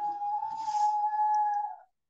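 A single steady high-pitched tone held for about two seconds, dipping slightly just before it stops near the end.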